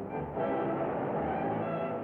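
Early-1930s cartoon orchestral score with brass, a busy passage that grows fuller about half a second in.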